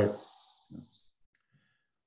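A voice finishing a word over a video call, then near silence broken by a faint short murmur and a single small click, with the line cutting to complete silence after it.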